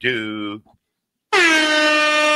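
A loud air horn sound effect starts about a second and a quarter in: one long, steady blast with a slight downward slide at its start. Before it, a voice's drawn-out falling note cuts off half a second in, followed by a short silence.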